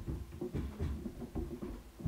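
Muffled, irregular thuds and knocks, several a second, carried through the building structure: footsteps and stomping from a neighbouring unit.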